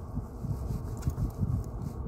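Uneven low rumble of background noise inside a car cabin during a pause in talk.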